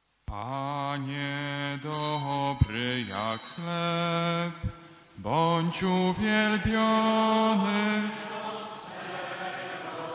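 A man singing a liturgical hymn in long held notes, with the church's reverberation; the singing breaks off briefly about halfway through.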